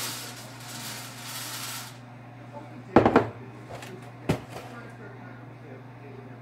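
Dry Cheerios cereal pouring from a glass measuring cup onto a metal baking sheet, a light rattling hiss for about two seconds. About three seconds in come two sharp knocks close together, then one more about a second later, over a steady low hum.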